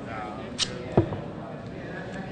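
Microphones being handled on a podium: a sharp click, then a louder low thump about a second in, as they are knocked against and fitted into the mic cluster.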